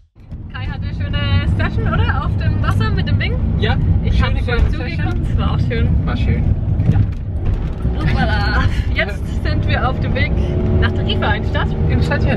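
Van engine and road noise heard inside the cab while driving, a steady low rumble under the talk; near the end the engine note rises as the van accelerates.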